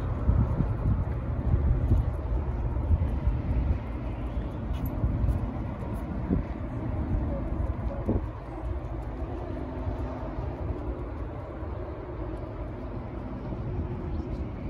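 Wind buffeting the microphone in gusts, heaviest in the first few seconds, over a low steady hum of distant engines.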